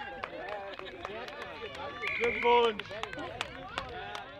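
Several voices of players and spectators calling out across a rugby pitch, with one loud, held shout about two seconds in.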